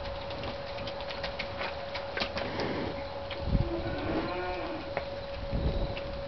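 A cow in a pen of black beef cattle moos once, a call of just over a second about three and a half seconds in, over a steady hum.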